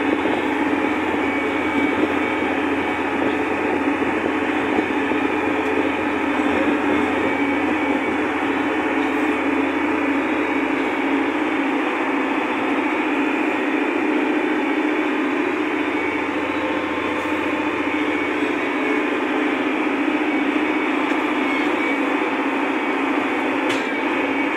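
Valtra tractor's diesel engine running steadily under way, heard from inside the closed cab as an even, unbroken drone.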